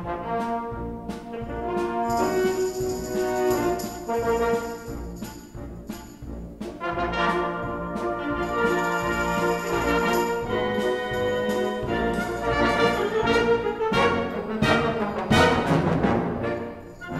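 A symphonic wind band playing, brass and woodwinds holding full chords over percussion strokes. A high shimmering layer comes in twice, and the music swells to its loudest near the end.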